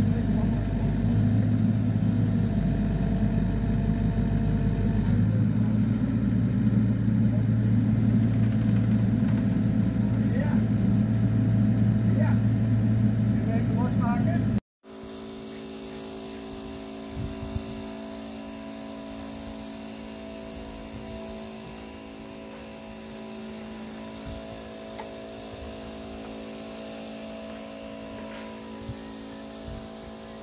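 Diesel engine of a Cat mini excavator running steadily and loud while the machine lifts a steel frame. About halfway through the sound cuts off abruptly and comes back as a quieter, steady engine hum.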